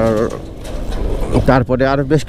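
A man's voice speaking, broken by a pause of about a second in the middle, over a steady low rumble of motorcycle engine and wind while riding.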